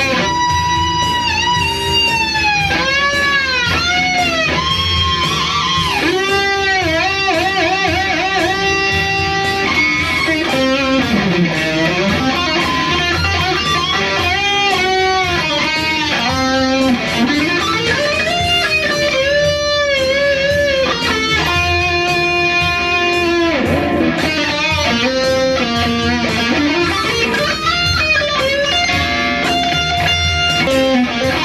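Electric guitar playing a lead solo: held notes with wide vibrato and string bends, between quick runs of short notes.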